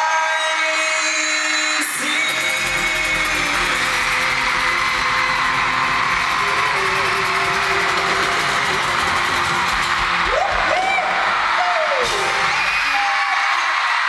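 Live pop band music with singing, heard from within the audience, over a crowd of fans screaming and cheering.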